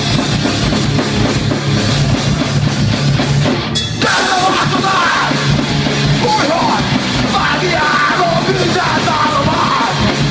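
Loud live rock band playing: drum kit, distorted electric guitar and bass, with a brief drop just before four seconds in, after which shouted lead vocals come in over the band.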